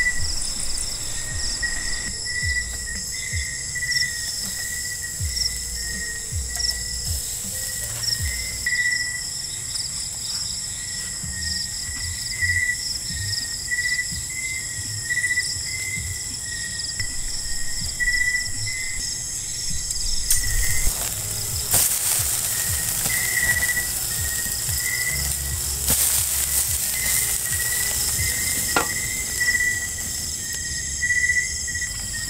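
Night-time chorus of insects, crickets among them: several high, steady trills layered together, one of them pulsing in short chirps. About two-thirds of the way through, a louder hiss with a few sharp cracks joins them.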